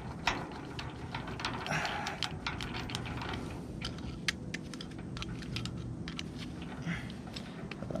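Irregular small metal clicks and clinks as a rusty safety chain is handled and the safety pin of a new clevis slip hook is worked, its ends squeezed together so the pin can be pulled out.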